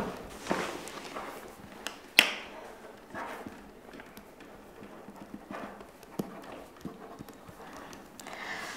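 Soft breaths or sighs with scattered light taps and knocks, the sharpest tap about two seconds in.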